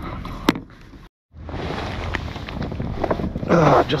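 Wind on the microphone, a steady noisy rush, with a sharp click about half a second in and a brief moment of total silence at an edit about a second in.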